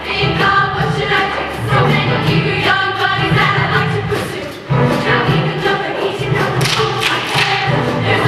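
All-female show choir singing in full voice over a live band with a steady beat. The sound thins briefly just before the middle, then the full ensemble comes back in sharply.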